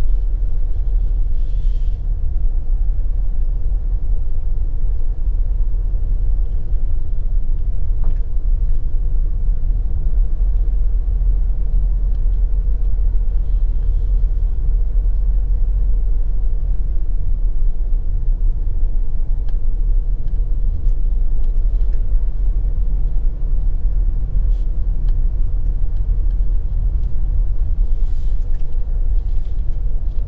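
Steady low rumble of a vehicle driving along a paved country road, heard from on board.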